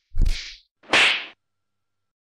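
Two cartoon hit sound effects: a punch, a low thump with a swish, then about a second in a second, brighter whoosh.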